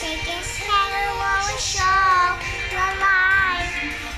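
A young girl singing a pop song in held, wavering phrases, with music playing behind her voice.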